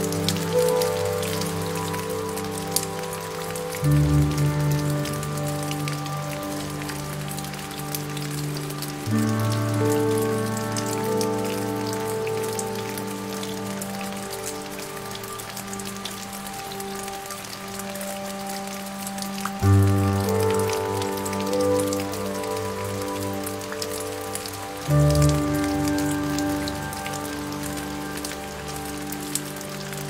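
Steady rain, a fine hiss of many small drops, over soft, slow piano music. A new low chord is struck every few seconds and then held.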